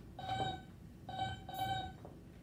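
A cartoon robot's electronic beeping: three short runs of beeps, played back over classroom loudspeakers.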